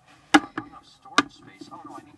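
Two sharp knocks of hard objects striking a surface, a bit under a second apart.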